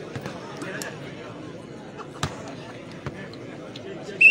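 Two sharp knocks, about a second apart in the second half, of a volleyball bounced on the hard dirt court, over a steady murmur of crowd voices.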